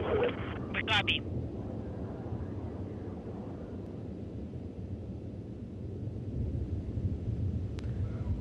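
Steady low rumble of a Soyuz rocket's liquid-fuelled first-stage and four strap-on booster engines firing during ascent, heard from the ground.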